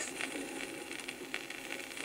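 Surface noise of a sonosheet flexi-disc playing on a turntable: a low, steady hiss with scattered light clicks from the stylus in the groove.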